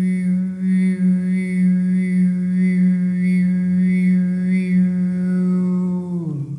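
A voice toning one long sustained note for sound healing, a wordless held tone. The pitch stays steady while the overtones waver up and down about every two-thirds of a second as the vowel shifts.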